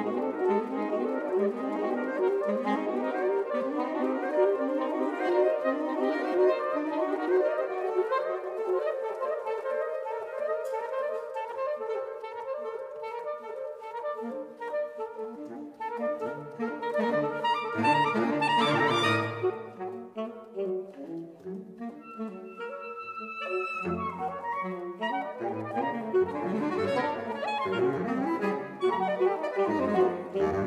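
Saxophone quartet of soprano, alto, tenor and baritone saxophones playing a contemporary concert piece: dense, fast-pulsing chords for the first half, thinning out past the middle with one loud low swell, then a soft passage with high held notes before all four come back in near the end.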